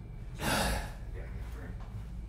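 A man's single short, breathy cough about half a second in, off the microphone as he moves away from it.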